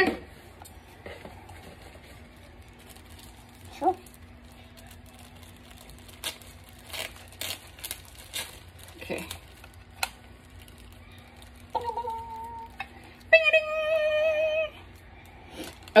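Faint clicks and rustles of hands fitting filter parts onto a plastic face mask. Near the end, two short hummed vocal notes, the second louder and longer.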